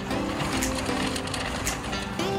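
Metal shopping cart rattling and rumbling as it is pushed along a store floor, under guitar background music.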